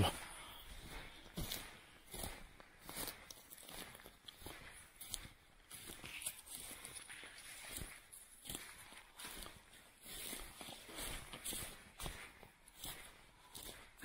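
Footsteps through dry grass and forest litter: an irregular run of soft crunches and rustles.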